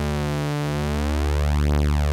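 Korg Prologue analog synthesizer holding one low note on two sawtooth oscillators in unison, the second slightly detuned, so the fat, buzzy tone slowly beats and phases. It grows a little louder toward the end.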